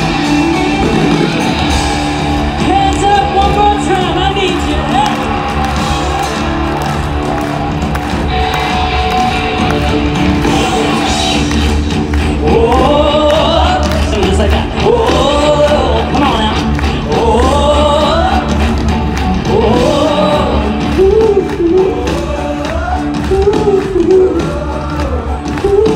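A live band playing through a large outdoor concert sound system, heard from out in the audience. A singer's voice is strong from about halfway on.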